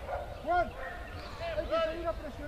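A dog barking in short, sharp barks: one about half a second in, then a quick run of several more in the second half, over background voices.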